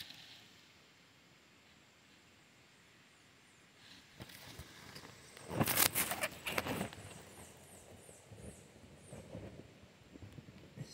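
Rustling and knocking from handling among leaf litter close to the microphone, starting about four seconds in after a quiet stretch and loudest a little past the middle. Faint high chirps repeat a few times a second near the end.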